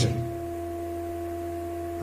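A steady low hum with a steady higher tone over it, unchanging throughout.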